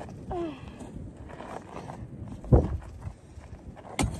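A pickaxe swung down onto gravel at a Pepsi can, with one loud sharp hit about two and a half seconds in and smaller knocks and crunches of gravel around it.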